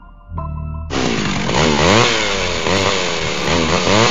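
A loud, rasping motor sound that starts about a second in and revs up and down in pitch again and again, over a low music drone.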